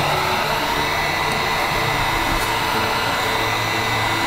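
Heat gun running steadily, blowing hot air to dry spray paint, with a faint steady whine over the rush of its fan.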